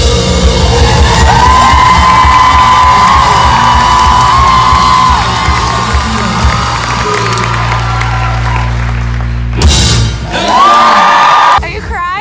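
Live rock band playing loudly, heavy on drums and bass guitar, with an audience cheering and whooping over it in a large hall. The music breaks off abruptly near the end.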